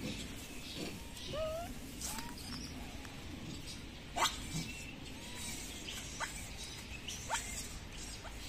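Faint animal calls: a few short rising squeaks in the first two seconds, then sharp, quick high chirps about four, six and seven seconds in, over a steady background hiss.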